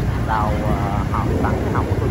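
Steady low rumble of a motorbike ride, engine and wind on the microphone, with voices over it.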